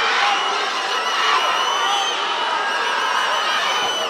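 Arena crowd cheering and shouting, a steady wall of noise without breaks.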